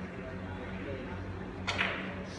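A cue tip striking the cue ball on a carom billiards table near the end, a short sharp click or two, over a steady low hum and faint background voices.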